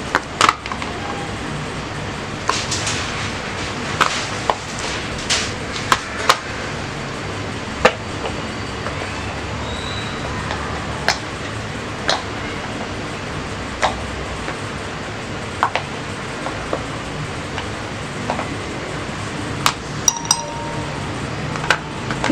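Hardened chocolate pieces dropping and tapping onto a plate as they are popped out of a silicone mold. The result is scattered, irregular small clicks over a steady background hum.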